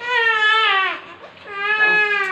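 Baby monkey crying: two long, high, wavering cries, each dropping in pitch at its end.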